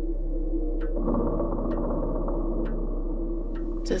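A low, steady, ominous drone of film score, thickening about a second in, with a clock ticking slowly, about once a second.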